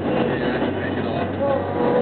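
Steady road and engine rumble heard from inside a car driving along a highway.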